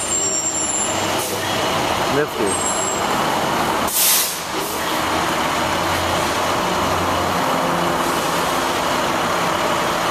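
Street traffic noise with a large vehicle's engine running. A short, loud hiss comes about four seconds in.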